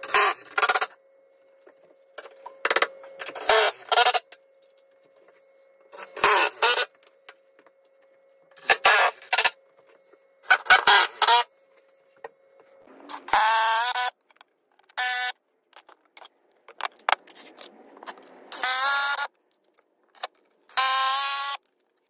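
A cordless power tool run in short bursts, about nine times, each half a second to a second long. The later bursts have a whine that rises as the motor spins up.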